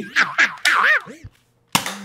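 A man's voice for about the first second, then a short silence, then a single gunshot sound effect near the end: the 'irony gun' being fired.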